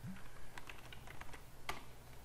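Typing on a computer keyboard: a quick run of separate key clicks, the loudest near the end.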